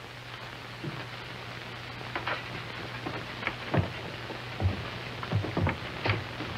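Steady hiss and low hum of an old film soundtrack, with scattered short knocks and thumps spread irregularly through it.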